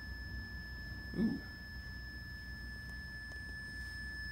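A steady high electronic alert tone from a REM-Pod paranormal detector, sounding while its blue cold-temperature light is lit. A low hum runs underneath.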